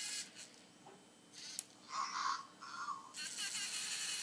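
LEGO Mindstorms colour-sorting robot's electric motors whirring briefly at the start and again near the end, with a click and two short mid-pitched sounds from the mechanism in between.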